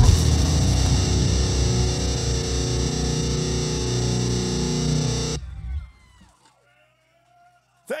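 Final chord of a metalcore song: distorted electric guitars and bass left ringing for about five seconds, the low end pulsing evenly, then cut off suddenly, leaving near silence.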